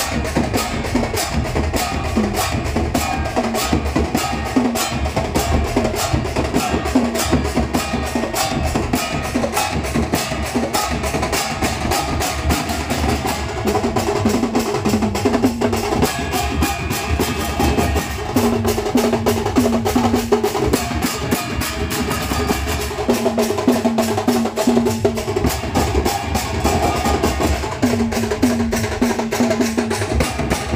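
Ghanta Badya ensemble: many hand-held bell-metal gongs beaten with sticks in a fast, steady, interlocking rhythm, the metallic strikes overlapping densely.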